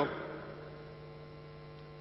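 Steady low electrical mains hum on the microphone and sound system, with the last spoken word's reverberation dying away in the first half second.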